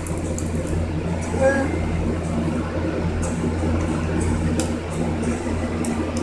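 A steady low hum throughout, with a few faint clicks of plastic clothes hangers being handled. About a second and a half in comes a brief muffled voice sound from a mouth full of hangers.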